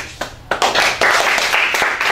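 A small group of people clapping: a few single claps at first, then dense applause from about half a second in.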